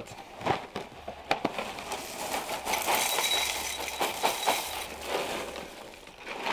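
Dry breakfast cereal poured from the box into a bowl: a few scattered clicks, then about three seconds of continuous rattling as the flakes pour in.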